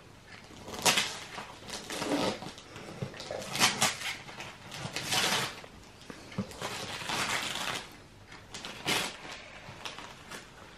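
Wrapping paper on a gift box rustling and tearing in irregular short bursts as the box is unwrapped.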